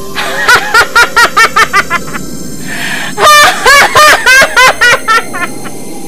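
A person laughing loudly in two bursts of rapid, high-pitched 'ha-ha-ha' pulses, the second and louder burst starting about three seconds in.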